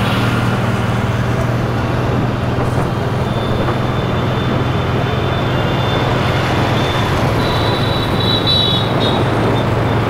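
Steady road and traffic noise heard from a moving vehicle, with a constant low engine hum. A faint high-pitched whine sits over it in the second half.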